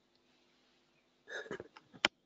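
Near silence, then about a second and a half in a short breathy mouth noise close to the microphone, followed by a faint click.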